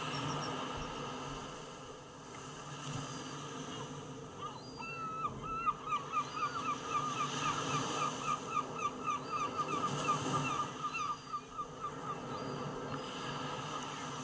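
Geese honking in a rapid run of calls that starts a few seconds in and dies away near the end, over a steady wash of small waves breaking on a shore.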